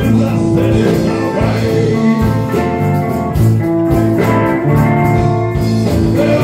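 Live band playing a slow blues-rock number, electric guitar over bass.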